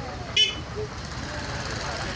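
Street traffic rumbling, with distant voices, and one short sharp toot less than half a second in that is the loudest sound.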